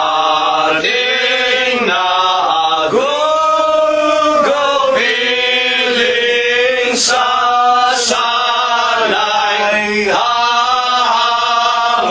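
Voices singing a slow worship hymn in long, held phrases.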